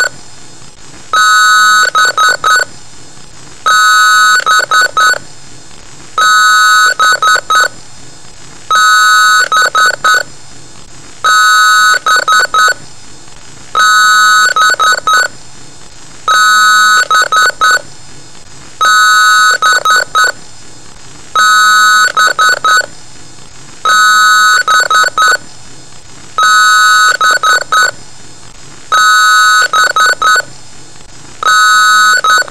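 A computer beeping in a repeating pattern, a long beep followed by a few quick short ones, about every two and a half seconds.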